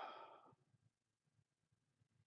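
A man's breathy sigh trailing off in the first half-second, then near silence.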